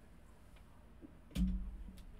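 A man drinking beer from a can: faint sounds at first, then about a second and a half in a sudden short, low sound as the sip ends and the can comes down.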